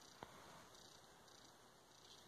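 Near silence: room tone, with one faint click about a quarter second in.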